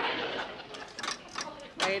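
A woman's breathy laughter trailing off, then a few light clicks and knocks, before she starts to speak.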